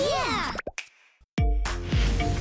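TV channel ident sound design: quick cartoon plops with falling pitch over music. They break off into a moment of near silence, then a bass-heavy music chord comes in suddenly a little past halfway.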